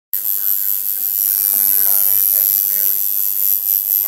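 Electric tattoo machine buzzing steadily as the needle works into skin, under faint background voices.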